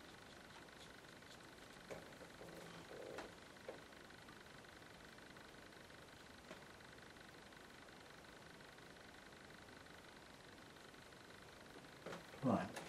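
Near silence: steady room tone with a faint hiss, broken by a few faint soft clicks and one brief soft sound about two to four seconds in.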